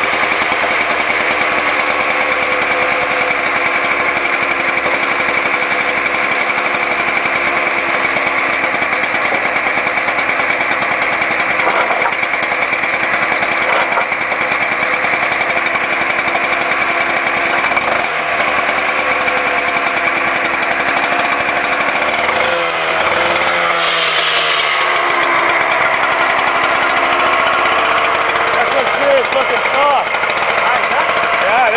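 Stihl TS 800 two-stroke cut-off saw running at high throttle while its blade cuts through asphalt, a steady engine note with a high whine over it. The pitch dips and shifts about two-thirds of the way through and rises again near the end.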